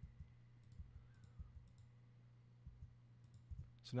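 Faint, scattered clicks of a computer keyboard and mouse, including delete-key presses, over a low steady hum.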